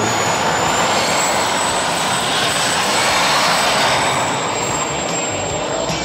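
Homemade gas turbine jet engine on a go-kart running: a loud, even rushing roar with a steady high-pitched turbine whine on top, as the kart drives off.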